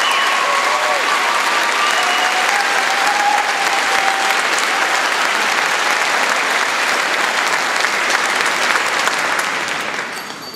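Large audience applauding, loud and steady, with shouting voices over it in the first few seconds; the applause dies away near the end.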